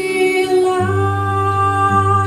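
A woman singing to acoustic guitar accompaniment, settling onto a long held note a little under a second in.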